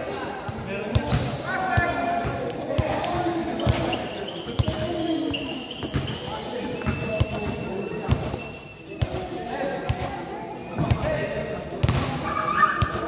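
A basketball bouncing on the court floor again and again at an uneven pace, with players' voices calling out over it.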